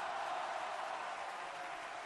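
Applause, a steady even patter that slowly tails off.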